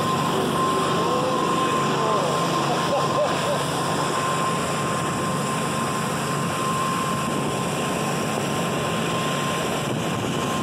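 Motorboat running at speed: a steady engine drone under rushing wind and churning spray, with a thin steady high whine throughout.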